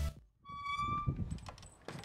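A wooden screen door's hinge giving one steady, high squeak as the door is pulled open, followed by a couple of sharp knocks from the door and footsteps on a wooden floor.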